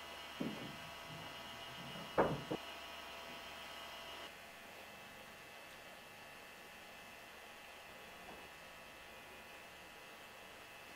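Faint steady electrical hum with a few soft knocks in the first three seconds, the loudest about two seconds in; the hum drops a little about four seconds in.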